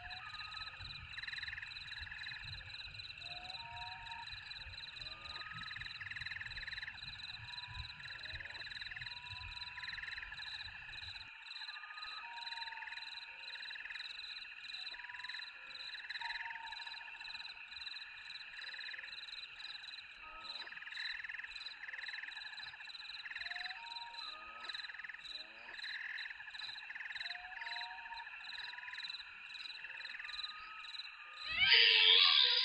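Night chorus of frogs calling, short repeated calls over a steady high-pitched insect trill. A low rumble underneath stops abruptly about eleven seconds in.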